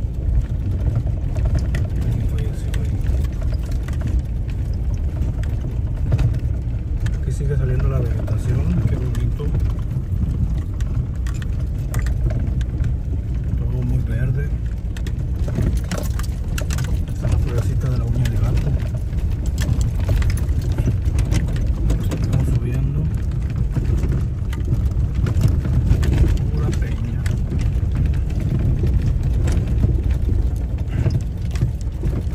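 Car driving slowly over a rough, rocky dirt road, heard from inside the cabin: a steady low rumble from the tyres and engine, with frequent knocks and rattles as stones hit the tyres and the body shakes.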